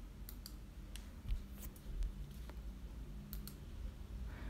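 A few faint, scattered clicks, about eight spread unevenly over four seconds, over a low steady hum.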